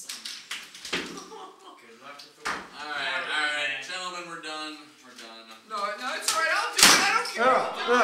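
Men's voices exclaiming around a card table, unclear as words, with a few sharp knocks or slaps, the loudest a little before the end.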